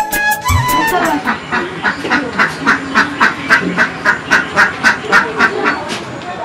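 A duck quacking in a quick, even series of about three quacks a second, as background music fades out at the start.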